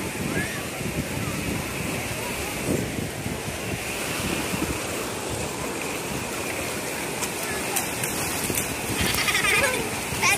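Steady wash of ocean surf breaking on a sandy beach, with distant bathers' voices and shouts mixed in, a little clearer near the end.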